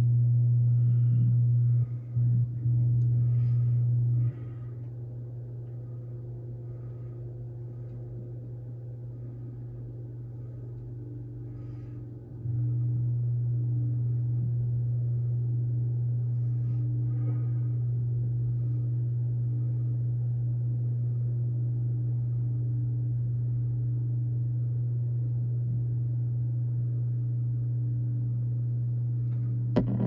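A loud, steady low hum. It drops to a quieter level about four seconds in and comes back about twelve seconds in, with faint scattered higher sounds over it.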